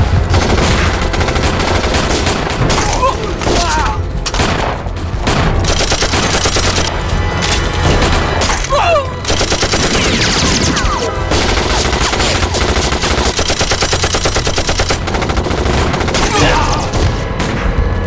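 Film battle sound effects: a dense exchange of gunfire, rifle shots and machine-gun bursts, with a long stretch of rapid, evenly spaced machine-gun fire in the second half.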